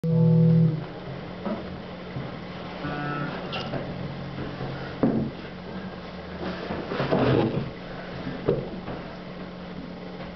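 A loud electric bass note at the start, then sparse guitar plucks and a few knocks as an acoustic guitar is handled into playing position, over a steady low hum.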